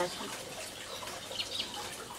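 Faint, steady water trickle in a fish tank, with a couple of brief, faint high chirps about a second and a half in.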